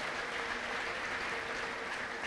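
A large congregation applauding, an even, steady patter of many hands, with a faint steady note held underneath.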